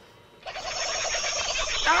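A person's drawn-out, warbling cry of dismay that starts about half a second in and grows louder, running straight into an exclamation of 'Oh, no!'.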